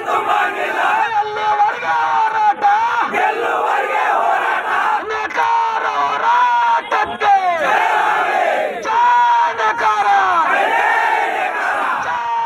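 A crowd of men shouting protest slogans together, loud and continuous, in repeated chanted phrases.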